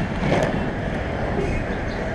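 Skateboard wheels rolling over asphalt: a steady, even rumble with no breaks.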